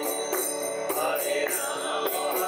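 A man singing a devotional kirtan chant to his own mridanga drum, with small hand cymbals ringing a steady, even beat of about two to three strokes a second.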